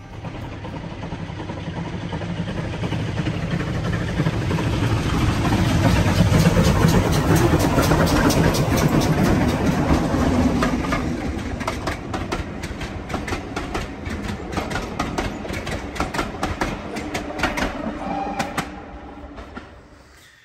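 Steam-hauled passenger train passing close by: a rumble that builds to its loudest around the middle, then a rapid, even clickety-clack of the coaches' wheels over rail joints that fades away near the end.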